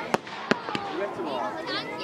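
Aerial fireworks going off: three sharp bangs in the first second, the first the loudest, with people's voices behind them.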